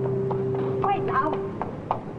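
Hurried footsteps of hard-soled shoes on a pavement, a sharp click about three times a second, over two held musical notes that end about a second and a half in.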